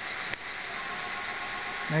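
Brushless hub motor spinning under a 24-FET BLDC controller, its sound changing as the controller goes into its 105% throttle mode. There is a single click about a third of a second in, then a faint steady whine comes in over the running hiss.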